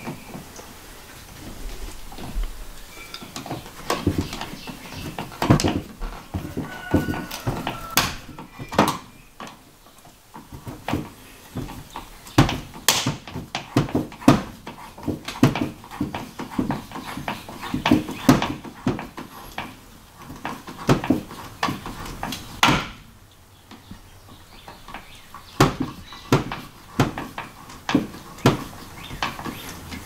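Blue corrugated plastic hose being pushed onto a fitting and a hose clamp tightened on it with a hand tool: irregular clicks, knocks and rattles all the way through, with a few louder sharp knocks.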